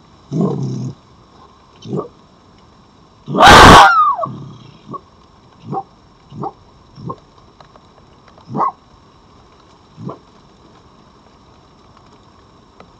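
Red foxes calling: a string of short, separate barks and huffs, with one much louder, harsh call about three and a half seconds in that falls in pitch at its end.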